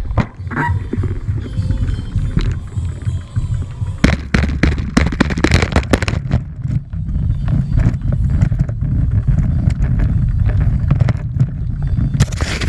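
Bicycle rolling over brick paving with wind rumbling on a handlebar-mounted action camera's microphone, the bike and camera mount rattling in sharp knocks from about four seconds in.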